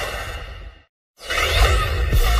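TV channel bumper audio: a whoosh sound effect that fades away to a moment of dead silence about a second in, then a whoosh swelling back in as the next bumper starts.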